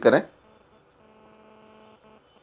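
The last word of a man's narration, then a faint steady hum with several even tones that starts about a second in.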